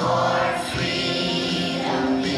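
A children's choir singing, holding long notes that change pitch a couple of times.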